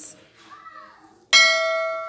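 A single bell chime struck about two-thirds of the way in, ringing on and fading slowly.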